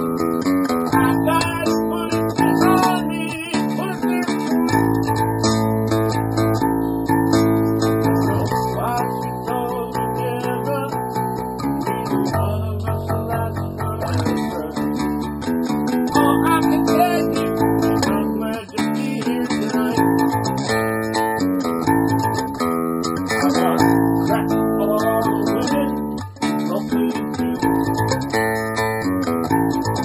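An electric bass and a guitar playing a song together. Sustained low bass notes change every few seconds under the guitar chords.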